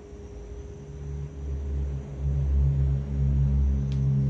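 A low rumbling hum that swells about a second in and then holds loud and steady, over a faint steady tone, with a single small click near the end.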